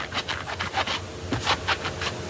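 Rubber stamps being scrubbed back and forth on a damp stamp-cleaning chamois, a quick run of rubbing strokes several times a second, as inky residue is worked out of the stamp.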